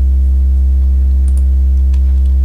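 Loud, steady low electrical hum with a buzzy row of overtones, a mains hum on the recording, with a few faint clicks near the start and about a second and a half in.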